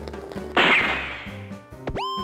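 Logo-sting sound effects over quiet background music: a whoosh about half a second in that fades away, then a sharp whip-like crack near the end, going straight into a bright ringing ping.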